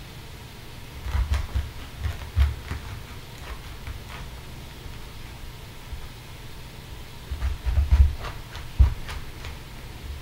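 Small kitchen knife cutting around the core of a head of cabbage on a plastic cutting board: dull thumps as the head is turned and knocked against the board, with faint crisp clicks from the leaves. The thumps come in clusters about a second in, around two and a half seconds, and again near the end.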